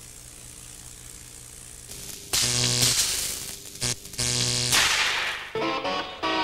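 A Tesla coil lighting a hand-held fluorescent tube without wires: a low steady hum, then from about two seconds in a loud, harsh electrical buzz in a few bursts, ending in a short hiss. Electric guitar music starts near the end.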